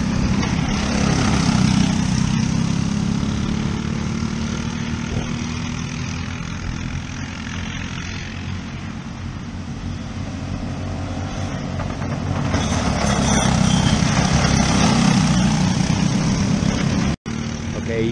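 A pack of Briggs & Stratton LO206 single-cylinder four-stroke racing karts running past on track. The engine sound fades in the middle and builds again from about twelve seconds in, with a sudden brief dropout near the end.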